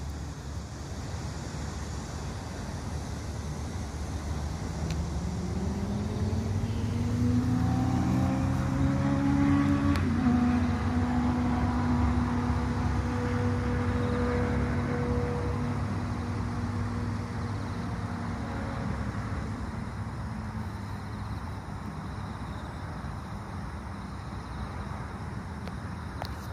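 Engine of a passing vehicle at some distance: a low hum that swells over several seconds, is loudest about eight to twelve seconds in, and fades away again.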